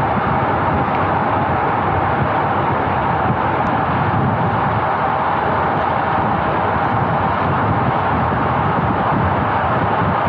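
Steady rush of wind and road noise on the microphone of a road bike moving at about 39 km/h. The sound is even throughout, with no changes or breaks.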